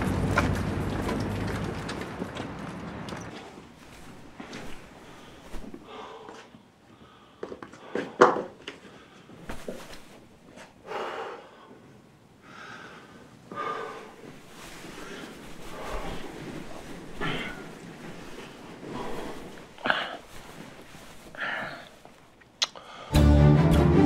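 A sleeping man's heavy breathing in a quiet room, one breath every two to three seconds, with a few soft knocks and one sharper thump about eight seconds in. Music fades out over the first three seconds.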